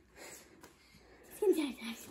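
A single short vocal sound from a child, falling in pitch, about a second and a half in; the rest is low room sound.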